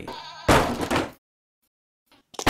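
A short, loud bleating animal call lasting about a second, which cuts off suddenly into dead silence.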